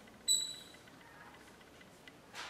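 Stick of chalk squeaking once on a blackboard while writing, a short high-pitched squeal about a third of a second in, then only faint room tone.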